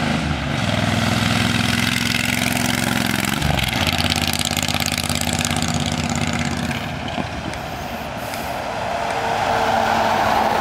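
Suzuki Boulevard C90's V-twin engine running steadily at cruising speed as the motorcycle rides along the road. Near the end, louder road noise rises as a box truck drives past close by.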